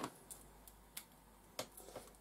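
A few faint, sharp clicks of plastic Lego pieces being handled. The clearest comes about a second in, then another about half a second later, with quiet room tone between.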